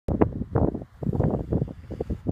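Wind buffeting the microphone in quick, irregular gusts.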